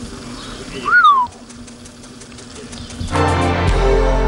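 A wirehaired vizsla gives one short, loud whine about a second in, its pitch rising then falling. A music passage starts near the end.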